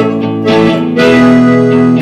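Live band music: an accordion holds sustained chords under guitar, and the chord changes about a second in.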